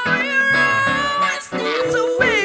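Live acoustic pop band: women singing lead and backing vocals, holding a long high note with vibrato over ukulele and keyboard, with a short break about one and a half seconds in before the next sung note.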